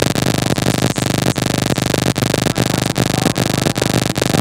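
Loud electronic buzz with rapid, regular crackling through the PA from a faulty handheld microphone, drowning out the speaker's voice.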